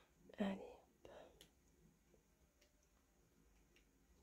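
A woman's soft whispered murmur, twice in the first second and a half, then near silence with a few faint ticks from the illustration book's paper pages being handled.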